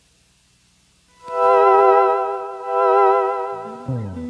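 Electronic keyboard holding a chord on a vibrato synth patch, starting about a second in and swelling twice, with lower notes coming in near the end.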